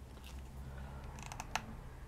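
A few light clicks and taps, bunched together just past the middle, as craft pieces are handled and pressed onto a mixed-media tag on the work table, over a low steady hum.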